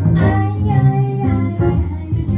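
Live jazz trio playing: a melodic line on archtop guitar over upright bass notes and piano.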